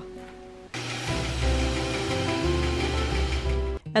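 Bandsaw running and cutting through a wooden strip: a steady rushing noise that starts just under a second in and cuts off suddenly near the end. Background music plays along with it.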